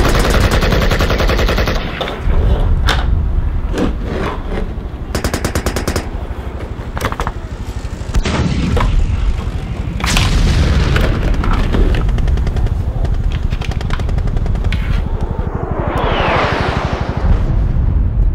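War sound-effects track: rapid machine-gun bursts and scattered gunshots over a constant low rumble of explosions. Whooshing sweeps pass over about ten seconds in and again near the end.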